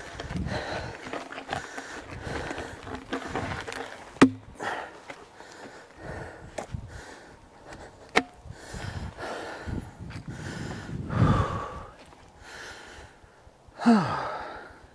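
A man breathing hard as he handles a heavy log by hand, with boots scuffing on dirt and bark. Two sharp knocks about four seconds apart, and a louder low thump about eleven seconds in.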